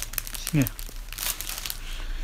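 Clear plastic bag crinkling and rustling in irregular crackles as a small child's hand rummages inside it.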